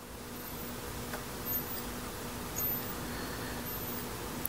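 Quiet steady background noise with a faint low hum and a few faint small ticks.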